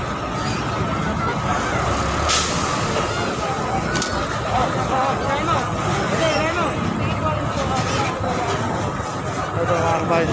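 Busy street noise: people talking in the background over a steady traffic hum, with a short sharp hiss about two seconds in.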